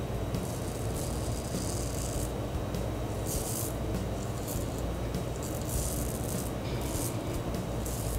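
Merkur 34G gold-plated two-piece double-edge safety razor scraping through lathered stubble on the cheek: a series of short, scratchy rasps, one stroke after another, over a steady low rumble.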